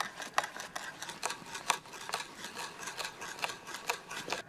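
Hand drill boring into a wooden log: a run of irregular short clicks and creaks, several a second, as the bit cuts into the wood.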